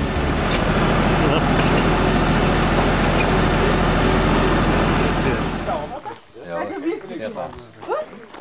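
Tractor engine running steadily under way, a low even hum with a rumble of noise over it, cutting off suddenly about six seconds in. Voices follow.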